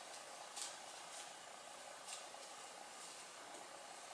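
A few faint, soft rustles of a folded paper napkin being pressed and blotted against the skin of the face, over a steady low hiss.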